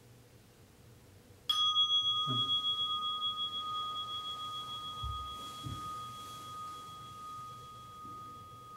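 A meditation bell struck once, about a second and a half in, ringing on with a clear, slowly fading tone that marks the end of the sitting period. A few soft low thuds of body movement follow as the bell rings.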